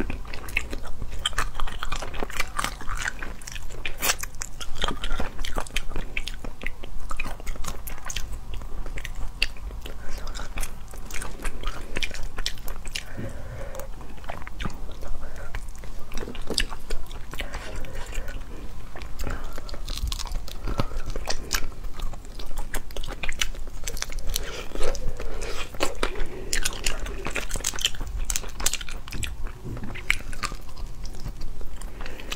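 Close-miked eating of a braised rabbit head in chili oil: chewing and nibbling meat and cartilage off the bone, with wet mouth sounds and many small sharp clicks and crunches throughout.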